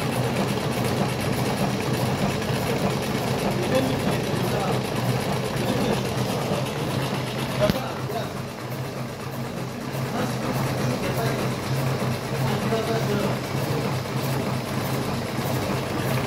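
Electric cigarette filling machine running steadily: a constant low motor hum with mechanical noise, and one sharp click about eight seconds in.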